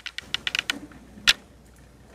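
A quick, irregular run of light clicks and taps in the first second, then a single sharper knock.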